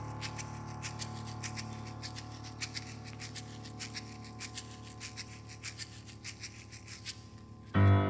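Grand piano chord held and slowly fading, with a rapid, uneven scratchy clicking over it, about four or five clicks a second. Just before the end a loud low piano chord is struck.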